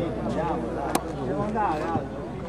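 Several voices overlapping, shouting and calling out, with one sharp click about a second in.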